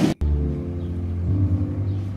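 A vehicle engine running with a steady low hum, starting just after a brief gap and easing off slightly toward the end.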